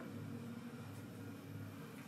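Faint, steady background hum and hiss: room tone with no distinct sound event.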